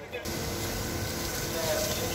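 Fire hose spraying water onto a burnt-out car's front end: a steady hiss that starts abruptly just after the start, with a steady low hum underneath.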